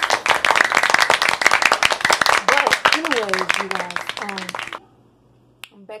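Applause and cheering: many dense hand claps with voices crying out over them, starting suddenly and cutting off abruptly after about five seconds.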